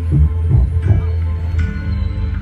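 Music with a deep, pulsing bass beat that gives way to a held low bass note about one and a half seconds in.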